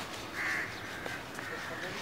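A bird calling: one short call about half a second in, and a fainter one near the end.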